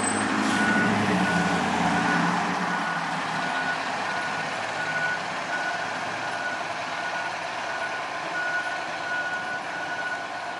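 Fire engine's diesel engine running as it pulls out of the station bay, its rumble fading over the first few seconds. A steady electronic warning beeper goes on alongside it, about two short beeps a second.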